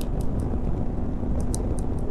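Motorcycle riding at highway speed, around 120 km/h: a steady rush of wind over the microphone mixed with engine and road noise.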